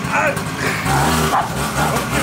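A pocket bike's small engine idling steadily while a pug barks at it.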